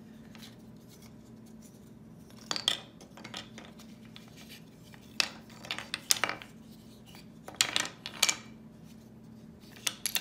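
Wooden jigsaw-shaped puzzle pieces being pulled apart and set down on a stone countertop, clicking and clattering in a few short bursts, about two and a half seconds in, around five to six seconds, and near eight seconds.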